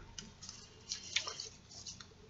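A few faint clicks and taps of trading cards and plastic card sleeves being handled in a cardboard card box.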